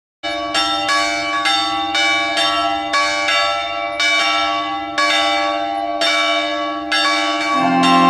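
Church bell ringing, about two strikes a second, each strike ringing on over a steady low hum. An organ starts playing sustained chords just before the end.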